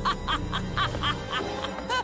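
Cartoon woman's gloating laugh, a rapid run of short "ha" syllables about seven a second, over background music.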